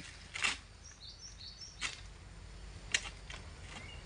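Egrek pole sickle pulled through an oil palm crown, cutting at fronds and fruit-bunch stalks: three sharp cracks spread over a few seconds. Faint bird chirps come in between the first two cracks.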